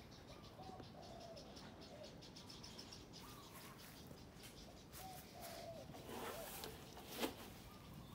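Faint outdoor birdsong: short chirping calls scattered through, with a fast high ticking trill in the first few seconds. A few sharp clicks come near the end, the loudest about seven seconds in.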